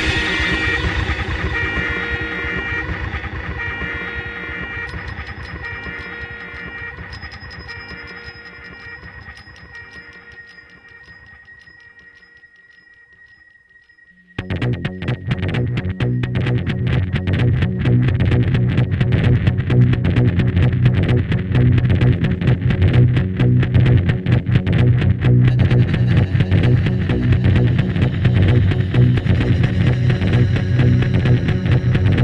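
Space punk rock recording: held, droning tones fade away slowly over the first half. Then, about halfway through, a loud, dense section with heavy bass and a fast pulse comes in suddenly.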